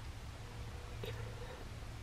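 Quiet pause in a man's speech: faint room tone with a steady low hum and a faint held murmur from the speaker.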